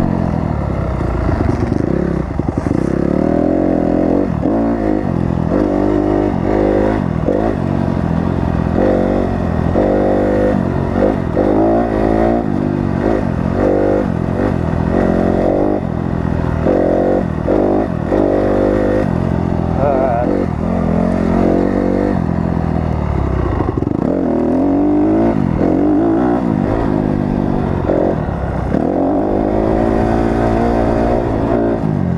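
Honda CRF250R single-cylinder four-stroke motocross bike engine under hard riding. The engine pitch climbs and drops again and again as the throttle is opened and chopped through the track's jumps and corners.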